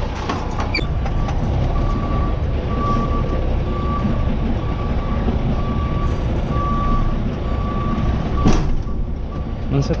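Semi truck's reversing alarm beeping steadily and evenly, roughly a beep every three-quarters of a second, over the low rumble of the diesel engine as the tractor backs under a trailer to couple to it. A brief sharp noise comes about eight and a half seconds in.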